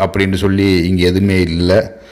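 Speech only: a man narrating in Tamil, stopping shortly before the end.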